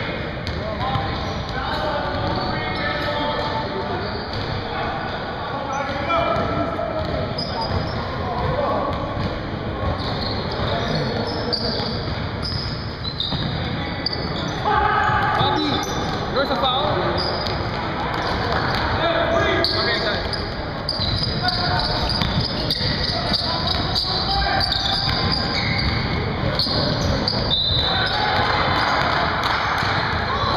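Basketball game sounds: indistinct voices of players and onlookers, with a basketball bouncing on the hardwood court.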